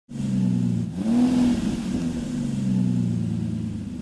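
Car engine revving up about a second in, then running steadily.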